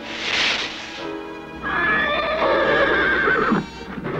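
Cartoon horse whinnying in one long wavering call of about two seconds, over background music, after a brief rushing noise near the start. The riderless horse is raising the alarm that its rider, Johan, is in trouble.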